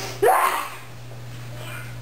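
A short, loud wordless vocal outburst, a yelp or shout rising in pitch, about a quarter second in, fading within half a second. A steady low hum runs underneath.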